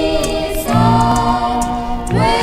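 Hawaiian-style band music: a sustained melody in harmony that slides down to a new note about half a second in, over a stepping bass line and light regular strums.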